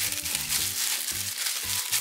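Clear plastic bag crinkling and rustling as hands pull it off a figurine, with background music of sustained low notes underneath.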